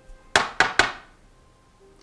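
A small lathe-turned metal stamp knocked three times on a wooden tabletop in quick succession, each knock sharp with a short metallic ring.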